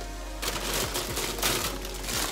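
Rustling with soft, irregular clicks and knocks, starting about half a second in, as vegetables and their packaging are handled and rummaged through.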